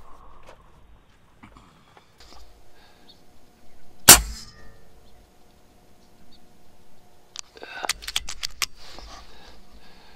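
A single shot from a Benjamin Gunnar .22 PCP air rifle about four seconds in: one sharp crack with a short ring after it. A few seconds later comes a quick run of sharp clicks.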